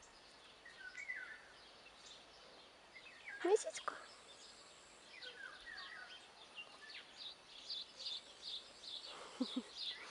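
Quiet outdoor ambience with birds chirping and singing on and off, the chirps coming thick and fast in the last few seconds. A brief vocal sound stands out about three and a half seconds in.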